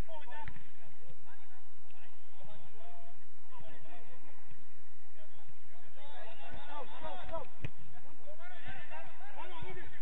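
Players shouting indistinct calls across an outdoor football pitch, loudest in a burst after about six seconds. A couple of sharp thumps of the ball being kicked, one just after the start and one past the middle.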